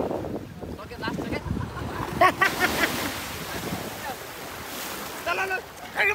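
Ocean surf washing on the beach with wind noise on the microphone, and short bursts of people's voices about two seconds in and again near the end.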